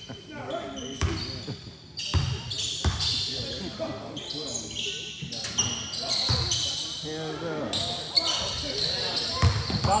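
A basketball bouncing on a hardwood gym floor, a few irregular bounces, with short high squeaks of sneakers on the wood, all echoing in a large gym.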